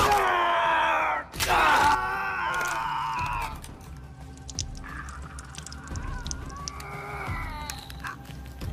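A person screaming in two long, strained cries over the first three and a half seconds, then a fainter cry later on, over film music.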